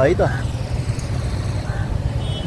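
Steady low rumble of roadside traffic, with a man's voice briefly at the start.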